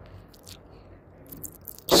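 A pause in a man's talking, filled with faint, scattered small clicks over low background noise; his voice comes back loudly just before the end.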